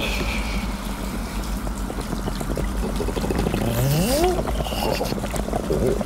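Cartoon sound of bathwater running and foaming into a bubble bath over a steady low rumble. A rising pitched glide comes about four seconds in.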